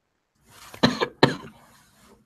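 A person coughing a few times in quick succession, about a second in.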